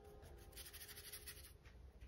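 Faint scratching of a paintbrush working white acrylic paint on a paper palette, a run of quick soft strokes.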